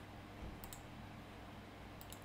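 A computer mouse clicking: a quick pair of faint ticks about half a second in, over a steady low room hum.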